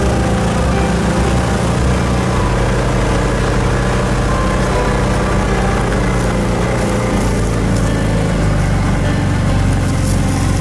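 Kawasaki Teryx side-by-side's engine running as it drives along, its note shifting in speed about two seconds in and again near seven seconds.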